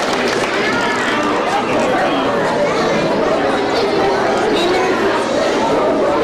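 A crowd of children chattering, with many voices overlapping at a steady level and no single voice standing out.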